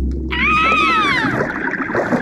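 Cartoon sound effects: a deep low rumble under a high sliding call that rises and then falls over about a second.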